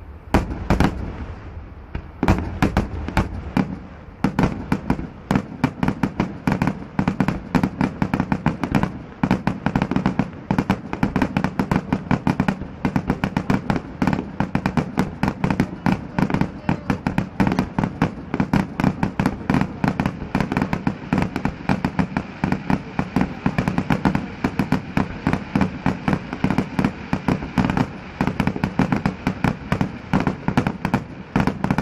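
Fireworks display: a bang just after the start, a brief lull, then from about two seconds in a continuous rapid barrage of bangs and crackles, several a second.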